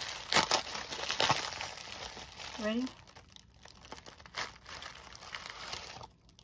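Plastic packaging crinkling and crackling as it is handled and a pouch is pulled out of its plastic bag. It is loudest and densest over the first half, with fainter scattered crackles after.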